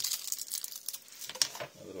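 Plastic packaging crinkling, with a few light clicks, as AA batteries just cut free from their blister pack are handled in the fingers.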